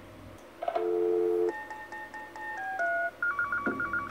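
Telephone dialing tones: a steady two-note tone for about a second, then a run of keypad tones stepping down in pitch, ending in a quick string of short beeps.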